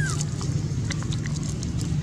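A steady low drone runs under scattered light clicks and rustles of macaques picking through dry leaf litter on the ground. A brief high squeak comes right at the start.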